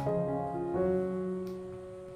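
Background piano music: slow, soft chords, the last one held and fading.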